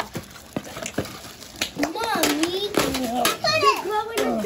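Children's voices, high-pitched talking and exclaiming, loudest over the last two seconds. In the first second and a half, a few sharp clicks and crinkles of plastic packaging as a string-light cord is pulled from its bag.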